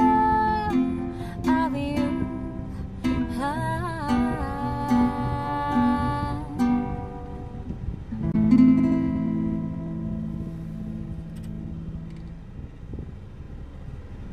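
A woman singing a slow ballad to acoustic guitar accompaniment. Her voice stops about halfway through, then a final strummed guitar chord rings out and slowly fades away.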